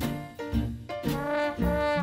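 Swing band playing an instrumental passage: brass horns holding notes over a low bass line that steps to a new note about every half second, with drum strikes marking the beat.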